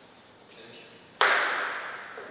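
A single sharp knock of a table tennis ball striking the table about a second in, ringing out briefly in the hall.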